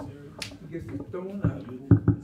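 Indistinct talking in a room, with a sharp click about half a second in and two dull knocks close together near the end, the second the loudest.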